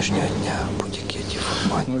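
A man speaking in a noisy, muffled recording over a steady low hum; another man's voice starts just at the end.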